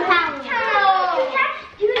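A child talking in a high voice while children play, with a woman saying "okay" at the very end.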